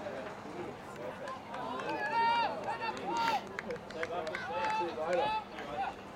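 Voices shouting during a rugby league match: several loud, drawn-out calls from about two seconds in, with scattered short knocks between them.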